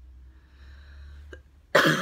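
A woman coughs into her fist: a sudden loud cough near the end, after a quiet pause.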